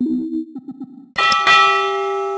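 Subscribe-button animation sound effect: a brief low tone with a few quick pulses, then about a second in a bell chime strikes once and rings on steadily.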